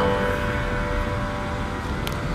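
Background music in a quiet stretch between phrases: a held note fades slowly over a low rumble.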